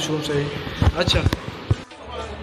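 A man's voice trails off, then several low thumps of footsteps on a hard tiled floor follow in quick succession about a second in.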